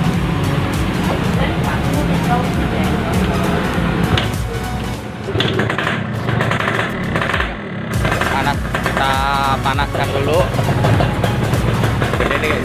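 Two-stroke motorcycle engines, a Yamaha RX-King and a Kawasaki Ninja 150 R, running at idle side by side with a steady low rumble, shortly after both were started.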